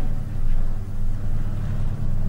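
A pause between words: only a steady low hum with faint room noise over it.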